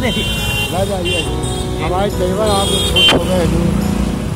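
Steady road traffic rumble from passing vehicles, with a sharp knock about three seconds in, under voices.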